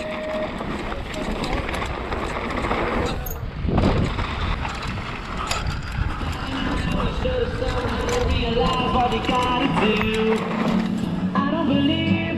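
Raw helmet-camera sound of a downhill mountain bike racing a dirt slalom course: wind rush on the microphone, tyres on loose dirt, and the bike's chain and frame rattling over the bumps. A heavy thump comes about four seconds in, as from a landing or a hard bump.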